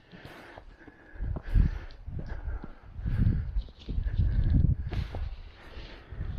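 Footsteps of someone walking a grassy, stony path, with low uneven rumbling from wind or handling on the camera's microphone, surging about once a second.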